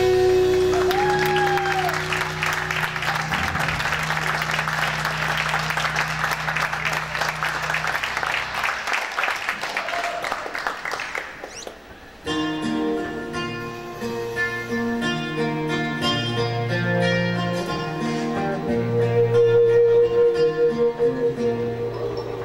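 Live band music: a sustained chord under a dense wash of sound for about the first ten seconds, fading out. After a short break about halfway through, a guitar-led passage of picked notes begins.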